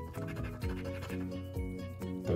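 A coin scratching the latex coating off a scratch-off lottery ticket in repeated short strokes, over background music with sustained notes.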